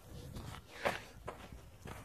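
Footsteps on a sandy dirt trail, a step roughly every half second, the loudest about a second in.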